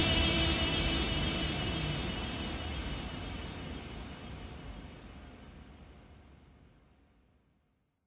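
Closing tail of a dance track after its last chord: a hiss-like wash of noise and reverb fading steadily, the highest sounds dying first, down to silence a little past two-thirds of the way through.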